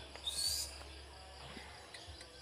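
Faint rural ambience: a brief high, rising bird chirp about half a second in, over faint insect chirping and a low steady hum.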